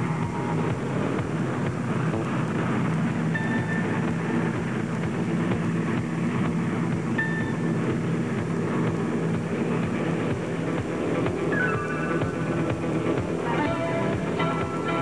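Background music: a steady bed of sustained tones, with a run of higher notes coming in near the end.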